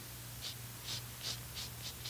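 Black chalk scraped across a paper drawing pad in short shading strokes, about five strokes in two seconds, over a steady low hum.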